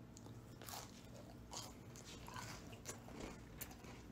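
A person biting into and chewing a freshly baked sugar cookie: faint, scattered crunches.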